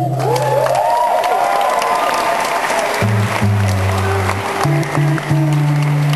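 Audience applauding and cheering as a song ends. Cheering voices rise over the clapping in the first second or so, and from about halfway through low acoustic guitar notes sound again under the applause.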